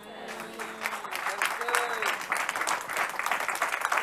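Church congregation applauding, a dense patter of many hands clapping, with a few faint voices calling out in the first two seconds.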